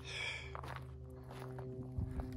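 Faint footsteps crunching on loose desert gravel, over a steady low drone.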